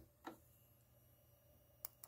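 Near silence: room tone with a faint low hum, a soft faint knock about a quarter second in and a single sharp click near the end.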